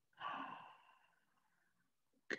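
A single breathy exhale from a person, starting about a quarter second in and fading away over about a second.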